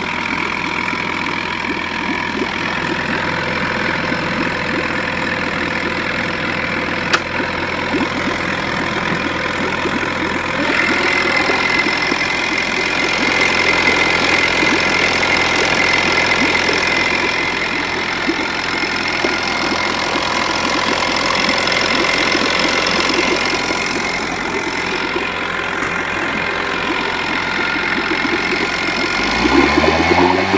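1971 Chrysler 5 hp two-stroke outboard motor running in a test tub of water. About ten seconds in it grows louder with a higher whine, and near the end its pitch swings down and back up.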